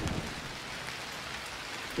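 Heavy rain falling steadily onto a hard wet surface. In the first moment the low rumble of a thunderclap is still dying away.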